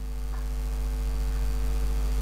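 Steady electrical mains hum with a few higher overtones and nothing else standing out.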